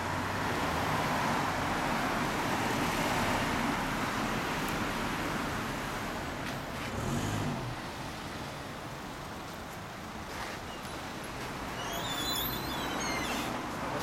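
Road traffic noise from a street, steady and even, swelling briefly about seven seconds in, with a few short high chirps near the end.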